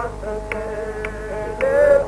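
Devotional shabad music between sung lines: a steady, reedy held chord with a light tap just under twice a second. A louder, wavering note swells near the end.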